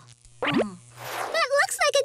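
Cartoon sound effects: a quick sliding zing about half a second in, then a falling whoosh, as a small electric spark zaps a character. A wordless character voice follows in the second half.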